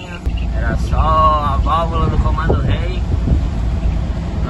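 Truck engine and road noise heard inside the cab while driving: a steady low rumble that gets louder just after the start.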